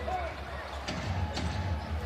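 Basketball dribbled on a hardwood court, a few bounces, over the steady murmur of an arena crowd.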